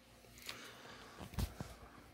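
Faint handling sounds: a hoodie's fabric being moved with a soft rustle and a few light knocks, the loudest about one and a half seconds in.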